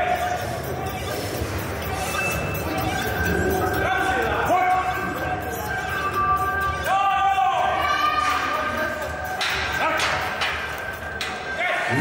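Voices in a large hall: people shouting with several long drawn-out calls over background chatter, with a few short knocks near the end.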